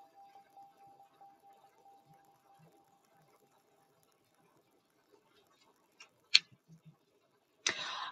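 A faint steady tone dies away over the first few seconds, then near silence is broken by one sharp click about six seconds in, followed by a couple of soft taps.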